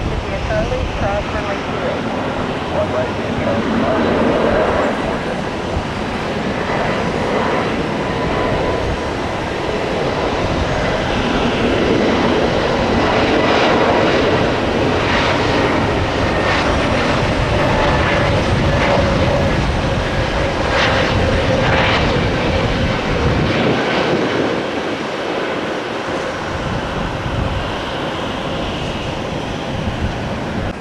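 Spirit Airlines Airbus A320-family jet taking off: its twin turbofan engines at takeoff thrust, a steady loud roar through the takeoff roll and lift-off. The deepest rumble thins out near the end as the jet climbs away.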